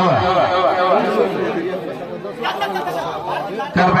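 Crowd chatter: many men's voices talking over one another, with a louder voice held briefly near the start and again at the very end.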